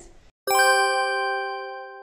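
An edited-in chime sound effect struck once about half a second in, several tones ringing together and fading out over about two seconds; it marks the cut to a section title card.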